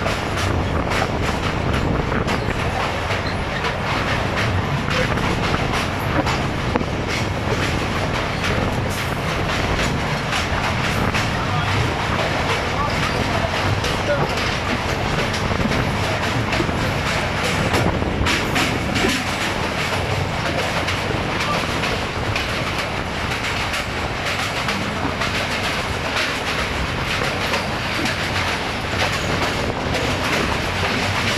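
Passenger train crossing a steel truss rail bridge, heard from the carriage side: a steady rumble with dense, rapid clattering of wheels on the rails.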